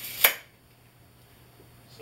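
A steel tape measure's blade retracting and snapping into its case: one sharp, loud clack about a quarter second in.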